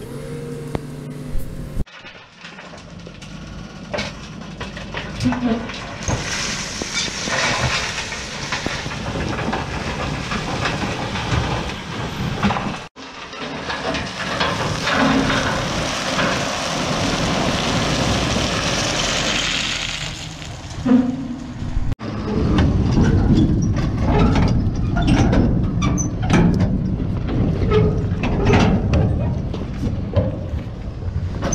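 A tractor-drawn tipping trailer pours recycled hardcore (crushed brick and stone) out of its raised body as it drives, giving a long rushing, rattling slide of rubble over the running vehicle. Near the end come a deeper rumble and many sharp crunches as the heavy trailer wheels roll over the tipped stones. The sound breaks off abruptly twice.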